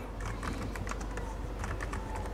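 Typing on a computer keyboard: a quick, irregular run of key clicks as a word is typed out.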